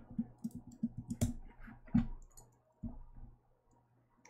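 Irregular clicks of computer keys, about a dozen spread over three seconds, with two louder ones about a second and two seconds in, then they stop.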